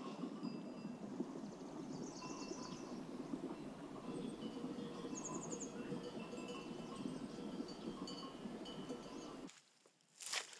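Faint clinking of bells on a herd of goats and sheep on the move, with short bright tones over a steady low outdoor hum; it all cuts off suddenly near the end.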